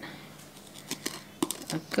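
Plastic scoop scraping and clicking against the inside of a plastic tub as greens powder is dug out: a few light, sharp clicks in the second half.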